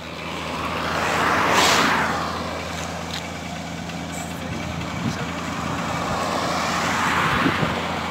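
Two road vehicles passing at speed on a highway, one after another: a swell of tyre and engine noise that rises and falls, loudest about one and a half seconds in, then a second pass building to its loudest near the end.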